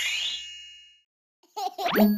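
A cartoon sound effect: a rising, sparkly glissando that ends in ringing chime tones, fading out within about a second. After a half-second of silence, a new rising sweep and bright pitched sounds begin near the end.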